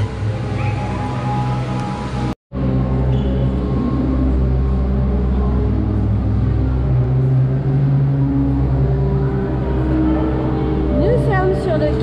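Music with long sustained low notes that change every few seconds, over a background of voices. The sound cuts out to silence for a moment about two seconds in, then resumes.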